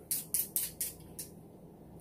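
Irregular, sharp crackling pops from cooking on the stove, as a pot of broth comes to the boil and a pan of oil heats. They come about seven times, mostly in the first second, then thin out.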